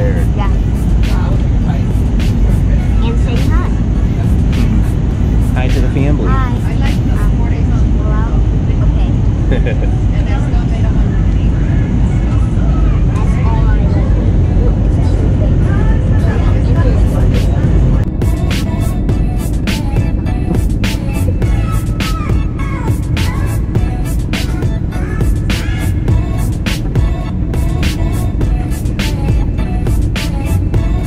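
The steady low rumble of an airliner cabin in flight, with music and indistinct voices over it. The sound changes abruptly partway through.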